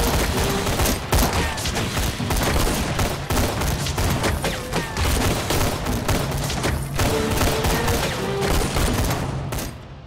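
Battle gunfire on a war-drama sound track: many gun shots in quick succession, overlapping one another. The shooting dies away near the end.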